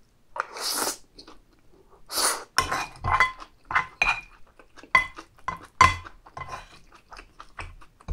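Close-miked eating: two loud slurps as spicy stir-fried intestines go into the mouth, then a run of sharp clinks and scrapes as a wooden spoon and chopsticks knock in the serving bowl, the bowl ringing briefly after the louder knocks.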